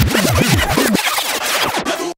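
DJ scratching a track on Pioneer DJ decks: a run of quick back-and-forth pitch swoops in the first second over the electronic music, which then plays on.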